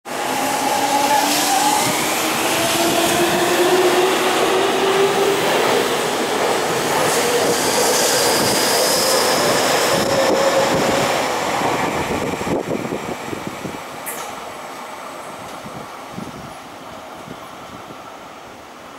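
Tokyu 5050 series electric commuter train pulling away from the station: its traction motors give a whine that climbs steadily in pitch as it accelerates, with the wheels rumbling on the rails as it passes. The sound then fades away as the train draws off.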